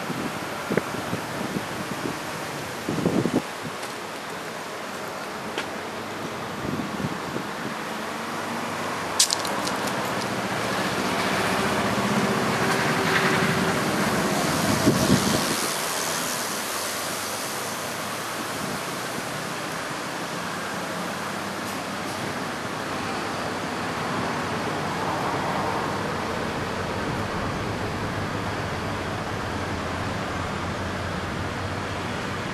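Street traffic ambience: a steady wash of cars on a city road, one vehicle passing louder around the middle, with a few small knocks.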